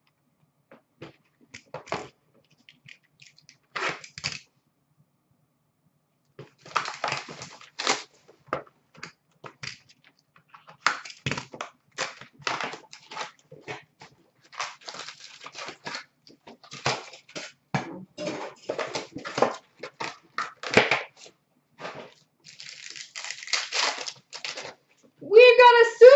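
Trading card packs being handled and opened by hand: a long run of short, irregular rustles and clicks of wrappers and cards, denser toward the end as a pack is torn open and its cards shuffled.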